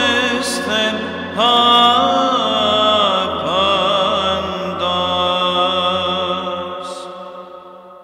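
Byzantine chant: a chanter's voice drawing out a slow, ornamented melismatic phrase of the saints' apolytikion over a steady low held drone (ison). The chant fades out near the end.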